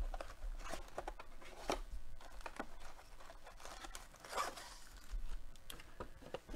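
A trading-card hobby box being opened by hand and its foil card packs taken out: irregular tearing, crinkling and small clicks and rustles of cardboard and wrapper.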